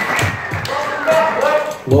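A man's voice through a PA microphone, with background music and a few soft, low thumps in the first half second.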